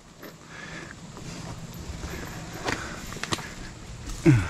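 A mountain biker moving about with his bike on a dirt trail: shuffling footsteps and handling noise, with two sharp clicks near the end.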